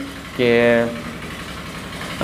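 Tube-well water pumps running steadily outside, a low even pulsing hum heard through the walls of the house, after one short spoken word. The pumps are drawing water to irrigate crops.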